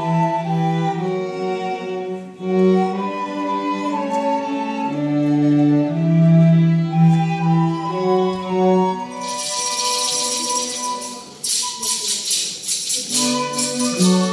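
A small string ensemble of violins and cello playing a folk-style tune. From about nine seconds in, a loud shaken jingling joins in and carries on alone for a second or two while the strings drop out. The strings come back in just before the end.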